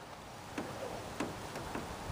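Faint, irregular clicks of a fishing reel being cranked in, over a soft steady hiss.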